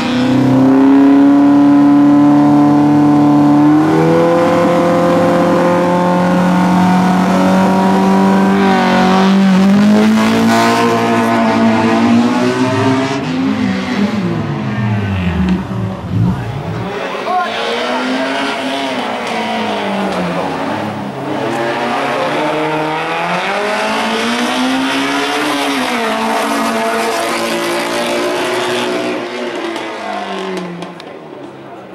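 Racing car's engine revving hard through a slalom. The pitch climbs in steps through gear changes, then drops steeply, and after that rises and falls over and over as the car lifts off and accelerates between the cones.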